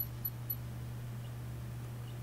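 A pause in speech over a video-call connection: a steady low electrical hum and faint background noise, with a few faint ticks in the first half second.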